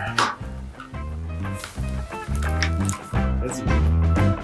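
Background instrumental music with a strong, steady bass line.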